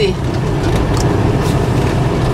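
Steady low rumble of a vehicle's engine and tyres heard from inside the cab as it rolls slowly over gravel.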